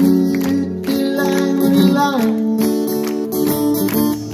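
An acoustic guitar strummed in a live solo performance, with a held vocal line that slides in pitch over it.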